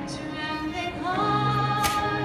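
Live music: a woman singing with violin accompaniment, held notes ringing out, with a new note sliding up into a long held tone about a second in. A brief click sounds near the end.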